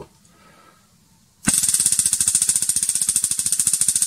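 Homemade battery-powered high-voltage spark igniter arcing between its electrodes: a loud, rapid, even crackle of sparks that starts suddenly about a second and a half in and runs on past the end.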